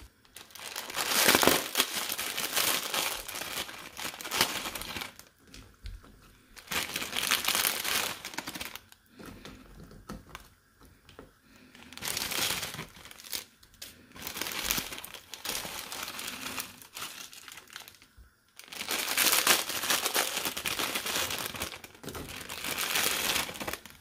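Plastic instant-noodle packets crinkling as they are handled, in several spells of a few seconds each with quieter pauses between.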